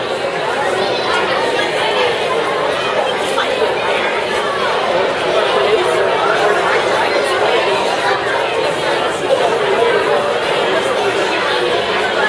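Crowd chatter: many adults and children talking at once in a large hall, a steady hubbub of overlapping voices.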